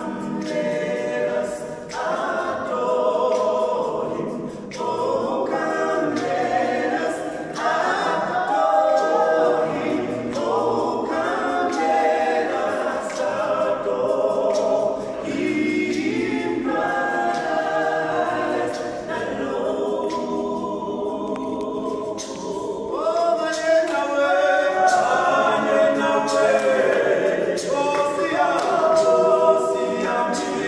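A small group of male voices singing a cappella in harmony, unaccompanied by instruments.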